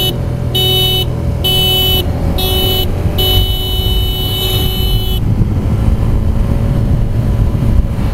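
Vehicle horn honking in a string of blasts: a few short honks, then one long honk of about two seconds. Under it runs the steady low rumble of the motorcycle's engine and wind noise at riding speed.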